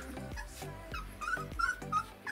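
Three-week-old rottweiler puppies whimpering: several short, high squeaks in the second half, over background music.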